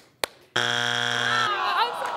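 Two quick hand claps, then a game-show buzzer sounds once, a steady harsh buzz for about a second, followed by laughter.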